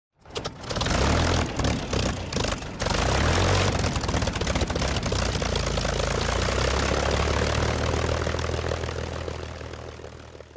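Propeller aircraft piston engine starting with uneven, broken bursts for the first few seconds, then running steadily, and fading out over the last two seconds.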